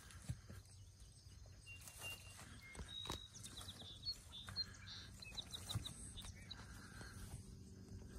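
Horses grazing close by: faint tearing and chewing of grass with a few soft thuds. A run of short high chirps sounds through the middle.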